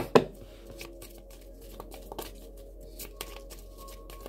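A deck of oracle cards being shuffled by hand: two sharp snaps of the cards right at the start, then soft, scattered card sounds. Faint background music underneath.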